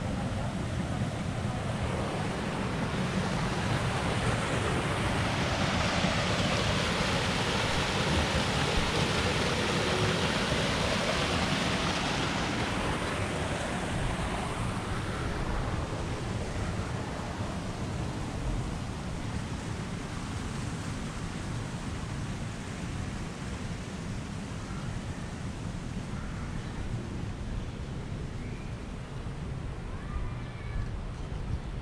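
Rushing water by a garden pond. It swells to its loudest a few seconds in and then fades, over a low rumble of wind on the microphone.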